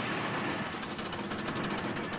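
Engine-driven rock-crushing machine running with a fast, even mechanical rattle, starting suddenly.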